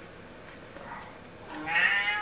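Quiet room tone, then about one and a half seconds in a high-pitched, drawn-out vocal sound begins and carries on to the end.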